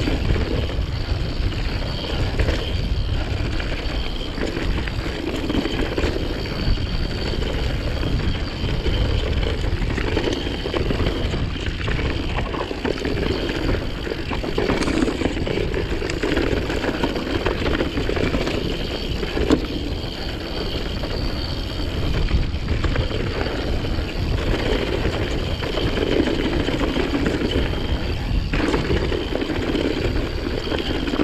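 Mountain bike rolling fast down dry, rocky singletrack: a steady rush of tyre noise on dirt and loose stones, with small knocks and rattles from the bike and wind on the microphone.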